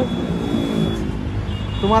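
Steady road-traffic noise from a busy city highway junction, motor vehicles running past; a man's voice comes in near the end.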